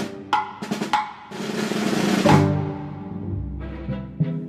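Two sharp knocks of a Chinese block struck with a mallet, then an orchestral side drum (snare drum) roll that grows louder for about a second and peaks in an accent before dying away, over sustained string chords.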